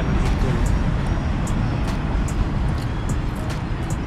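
Steady low rumbling noise with short faint high ticks scattered through it.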